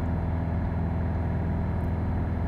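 Piper PA-28's four-cylinder piston engine and propeller running steadily at climb power, a constant low drone heard from inside the cockpit.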